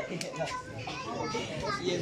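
Children talking and calling out, mixed with other voices.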